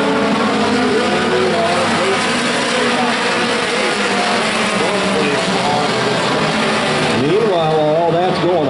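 Several race car engines running hard around the track, their pitch rising and falling as they pass, over a steady wash of engine and tyre noise. A voice comes in near the end.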